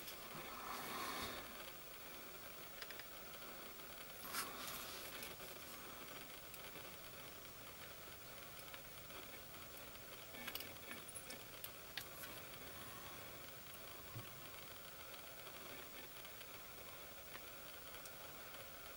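Quiet room hiss with a few faint ticks and taps spread through it: the small contact sounds of a soldering iron and solder being touched to header pins on a circuit board.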